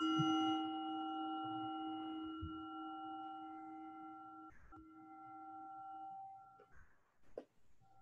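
Meditation bell struck once as the opening bell of a silent centring period, its ringing of several pitches fading away over about six and a half seconds, with a brief break in the tone just past halfway.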